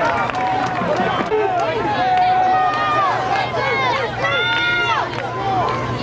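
Many voices at a football game shouting and calling over one another, with one long drawn-out shout about four seconds in. A steady low hum runs underneath.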